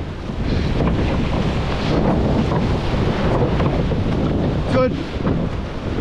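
Wind buffeting the microphone over rushing, splashing sea water as a surf boat is rowed out through breaking waves. One short shout near the end.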